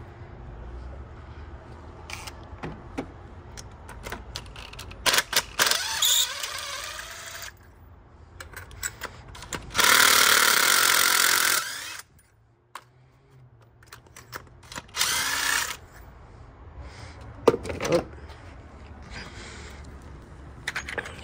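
Cordless DeWalt impact driver unscrewing spark plugs in short runs. The longest and loudest run, about ten seconds in, lasts about two seconds. Clicks and knocks of tools come between the runs, with one sharp knock near the end.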